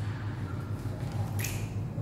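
Room tone: a steady low hum under faint hiss, with one brief soft hiss about one and a half seconds in.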